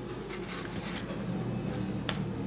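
Light rustling of folded paper being handled, over a steady low hum.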